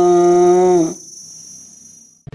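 A man's cartoon-style voice holds one long drawn-out vowel for about a second, then cuts off. A high, steady ringing chime runs with it and fades out near the end.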